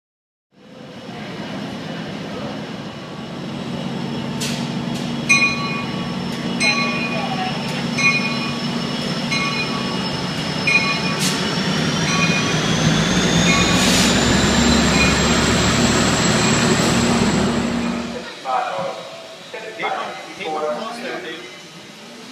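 Passenger train rolling past the platform: a steady low rumble with a bell ringing about every second and a half, and a high whine that rises in pitch partway through. It cuts off suddenly, and voices follow.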